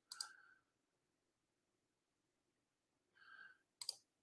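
Near silence: room tone, with a few faint clicks, one just after the start and a pair near the end.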